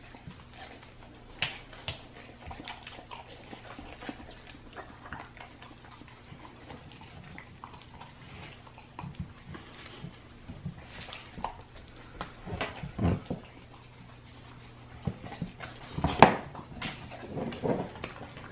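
A Great Dane gnawing and chewing a raw deer shank on a tile floor: irregular wet clicks, scrapes and chewing noises, loudest in two spells in the second half. A faint steady low hum runs underneath.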